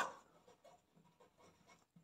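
Faint sound of a marker pen writing on paper, the soft scratch of handwriting strokes.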